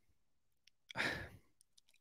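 A man's single short breath, a sigh-like intake of air, close to the microphone about a second in, between spoken sentences.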